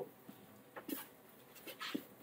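Quiet pause with two short, faint breath sounds, about a second in and near the end.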